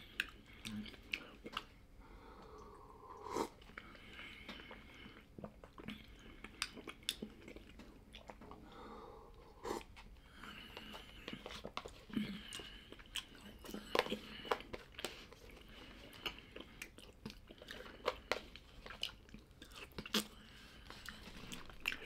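A person eating ground-meat soup at close range: chewing and mouth noises with many short, sharp clicks scattered throughout.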